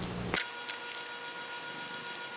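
Quiet background with a faint steady whine made of several thin tones, and a few faint ticks.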